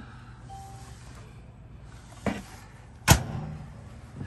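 A convection microwave's door being pushed shut: a light click a little after two seconds, then a sharp latch click about three seconds in, over a low steady hum.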